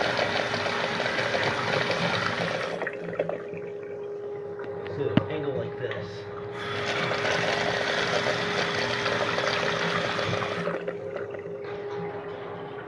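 Water rushing through a miniature clay toilet's concealed siphon jets and swirling down its bowl in two surges: one that fades about three seconds in, and a second that starts about six and a half seconds in and runs for some four seconds. A steady hum runs underneath, with a single click between the two surges.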